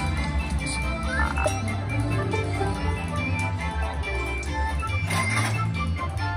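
Slot machine game music: sustained bass notes under repeated electronic tones, with a short noisy burst about five seconds in.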